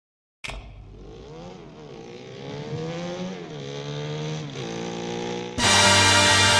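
Motorcycle engine revving up and down several times. Loud theme music starts near the end.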